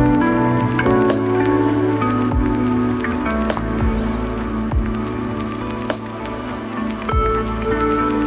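Background music: sustained tones over a slow, soft beat.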